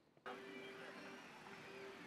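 A faint, steady mechanical hum with a steady low tone running through it. It cuts in suddenly about a quarter of a second in, after a moment of near silence.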